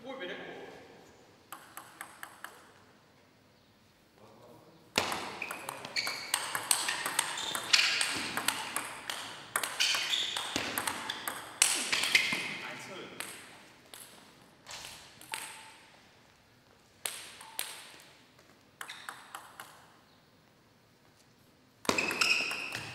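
Table tennis rally: the ball clicking off bats and table in quick back-and-forth succession, with a few loose bounces before it and scattered bounces afterwards.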